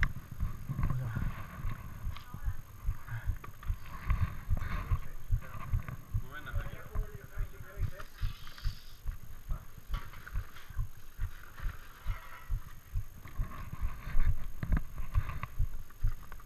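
Rhythmic low thumps of quick footsteps jolting a carried camera, about two to three a second, with the rustle of the camera moving.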